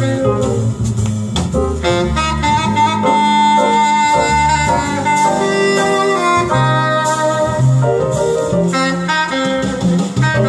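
Instrumental jazz from a live concert recording: a saxophone carries the lead over double bass and a rhythm section, holding one long note a few seconds in.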